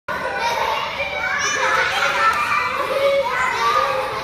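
A group of young children playing excitedly, their high voices overlapping throughout.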